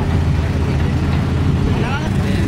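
A steady, loud low engine hum with a constant pitch, under people's talking voices.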